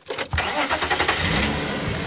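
Safari vehicle's engine starting: it catches about a third of a second in, then runs steadily.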